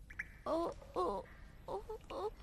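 A young boy's voice giving two short whimpering moans, with a shorter third near the end, as he shivers with cold.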